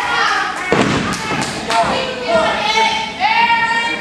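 A single heavy thud on a wrestling ring's mat a little under a second in, the sound of a wrestler landing in the ring, with a few lighter knocks after it. Shouting voices run throughout.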